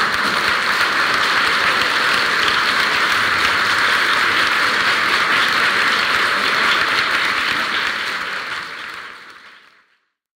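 A live audience applauding, a steady dense clapping that fades out over the last two seconds or so.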